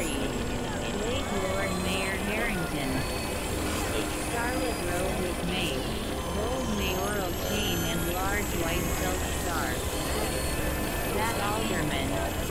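Experimental electronic noise drone: a steady low rumble under a dense hiss, with warbling tones that bend up and down like garbled voice fragments.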